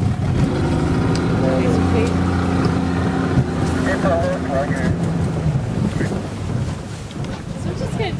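Outboard motor of an inflatable boat idling with a steady low hum, which fades out about five and a half seconds in; wind buffets the microphone.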